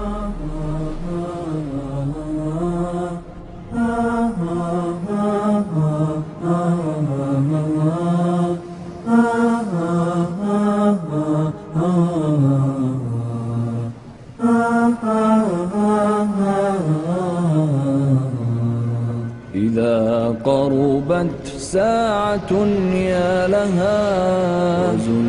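A single male voice chanting without accompaniment in long ornamented phrases, in the style of an Arabic religious poem (nasheed), with short breaths between phrases.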